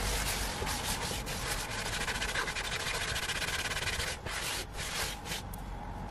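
A cleaning wipe rubbed quickly back and forth over a leather car seat: a steady dry rubbing of fast strokes that breaks into short pauses about four seconds in.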